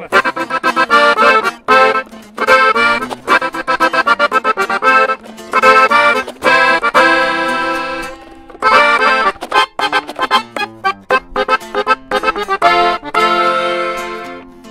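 Diatonic button accordion playing a norteño corrido introduction in quick runs of notes, with a held chord about seven seconds in, an acoustic guitar accompanying beneath it.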